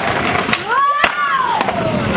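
Skateboard wheels rolling on concrete, with a sharp clack of the board about a second in. Over it, a drawn-out shout rises and then falls in pitch.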